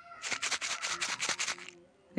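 A small white packet crinkling in the hand: a quick, dense run of crackles lasting about a second and a half.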